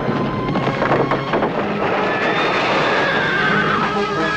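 A horse whinnying in a long, wavering call through the second half, after a clatter of hooves in the first second or so, over the steady hiss of rain.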